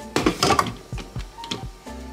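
A few short clicks and knocks of a stainless steel milk frother jug and its lid being handled and set into the frother base of a Keurig coffee maker, over background music.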